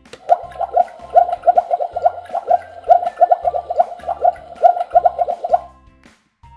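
Boiling-pot bubbling sound effect: a rapid run of bloops, about four or five a second, each rising slightly in pitch, which stops shortly before the end. It plays over background music.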